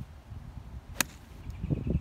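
A golf club striking a ball off the turf: one sharp crack about a second in.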